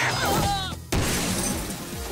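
Plate-glass window shattering with a sudden crash about a second in, over background music.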